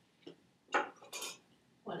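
Small objects knocking and clinking on a table as they are handled, three short sharp sounds within about a second.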